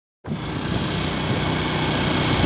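Steady rush of wind and engine noise from a vehicle moving along a road, picked up by a handheld phone microphone; it starts a moment in.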